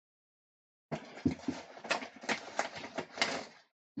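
Sheets of paper being handled and rustled on a craft table, with several light taps and clicks, for about three seconds.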